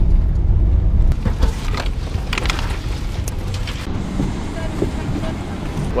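Airliner's landing roll heard from inside the cabin: a loud low rumble of engines and wheels on the runway, with light rattles, easing slightly after about three seconds.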